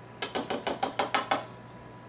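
Wire whisk clicking rapidly against a mixing bowl as it pokes soaked croissant pieces down into the milk and egg mixture: about ten quick taps in a little over a second, then it stops.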